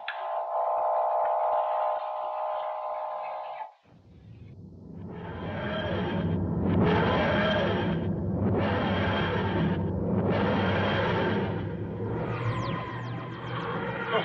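A steady electronic hum for about four seconds, cut off sharply. After a brief pause comes the TARDIS dematerialisation sound effect: a pulsing electronic sound that swells and fades about every two seconds as the TARDIS takes off.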